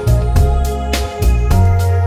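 Background music: keyboard-led instrumental with a steady beat and strong bass.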